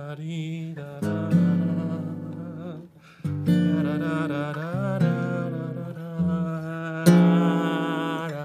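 Acoustic guitar strumming chords in a bossa nova rhythm, in several phrases that begin about a second in, with a man's voice singing the melody over them.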